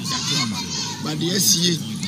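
Lively voices talking and calling out over one another.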